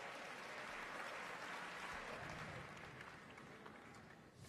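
Studio audience applauding, slowly dying away.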